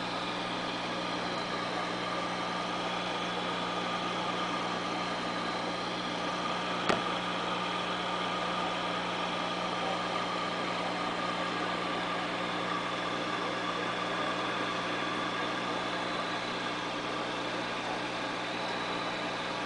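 Steady electrical hum with a hiss, with one sharp click about seven seconds in.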